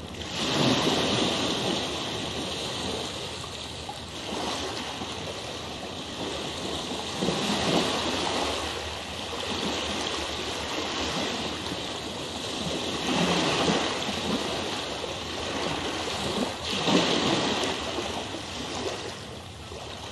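Recorded rushing water, a steady wash that swells and eases every few seconds, like waves.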